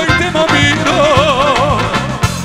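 Live band music with a steady bass beat; about a second in, the lead melody holds a high note with a wide, wavering vibrato.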